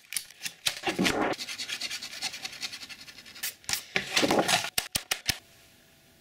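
A hand rubbing and scratching across a paper wall map in short strokes, with a few sharp clicks near the end.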